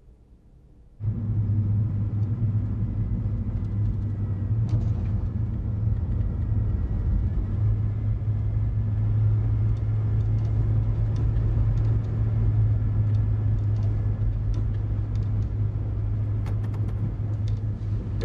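Car on the move: a steady low rumble of engine and road noise that starts abruptly about a second in.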